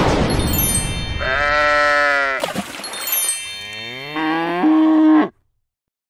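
Two drawn-out, voice-like calls, the first slightly falling in pitch and the second rising, then held, after a rushing noise that fades in the first second. The sound cuts off abruptly about five seconds in.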